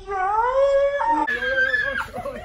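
A person's long high-pitched scream or wail that rises in pitch and breaks about halfway through.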